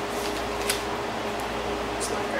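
Steady low room hum, with a few short wet clicks of lips smacking as jelly beans are chewed.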